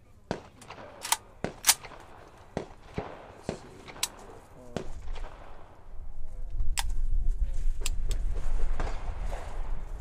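AK-pattern rifle fired semi-automatically: about ten single shots at an uneven pace, roughly one every half second to second, most of them in the first half. A low rumble builds in the second half.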